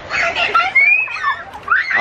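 Children's high-pitched shouts and squeals at play, with rising and falling cries.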